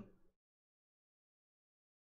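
Near silence: the live stream's audio drops out to dead digital silence just after the last word trails off at the very start.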